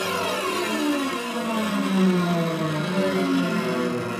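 An edited transition sound effect: many layered tones sliding slowly downward in pitch together, steady in loudness.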